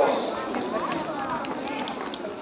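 Indistinct background voices and chatter, with a few light clicks.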